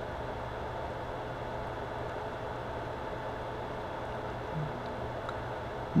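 Steady electrical hum and hiss from running test-bench equipment, with a faint steady higher tone and a brief low sound about four and a half seconds in.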